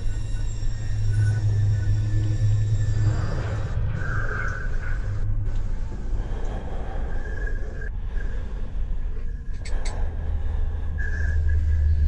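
A low, steady rumble from a horror film's body-cam soundtrack. It is strongest in the first few seconds and again near the end, with faint scattered noises over it.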